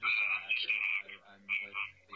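A man's voice coming through the small built-in speaker of a hacked Nest security camera, thin and tinny, saying he is just a hacker with the Anonymous Calgary hivemind in Canada.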